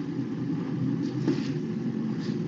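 Steady low rumbling background noise, with no speech.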